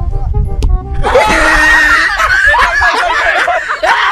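Background music with a steady bass beat, a single sharp thud of a football being struck just before a second in, then a group of young men screaming and shouting excitedly, loud enough to bury the music.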